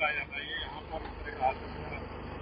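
A man's voice trails off at the end of a sentence and pauses, leaving steady outdoor background noise with faint voices.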